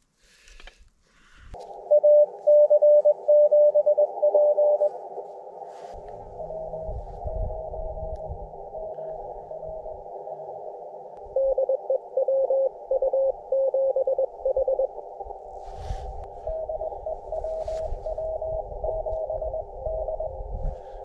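Morse code (CW) from an amateur radio transceiver: keyed on-off tones over a steady band of receiver hiss, with louder spells of keying alternating with fainter ones as contacts are exchanged. Bouts of low rumble underneath.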